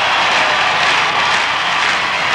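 A loud, steady rushing noise with no voice or beat, a jet-like whoosh effect.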